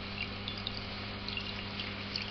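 Thin, steady stream of distillate trickling from a copper spout into liquid in a glass jug, over a steady low hum.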